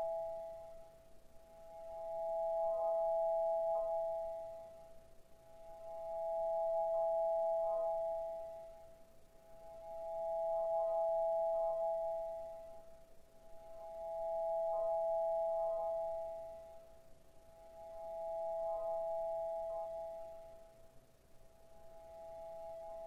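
Music for piano and electronics: a sustained two-note electronic tone, bell-like, swelling and fading in slow waves about every four seconds, with faint soft piano notes around it.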